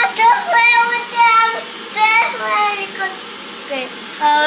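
A small boy talking excitedly in Czech in a high, sing-song voice, drawing out his words in several short phrases with brief pauses between them.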